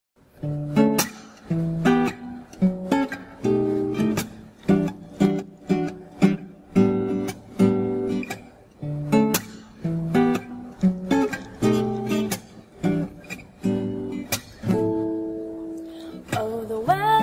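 Solo Taylor acoustic guitar playing an instrumental intro, chords struck in a steady rhythm of about two a second.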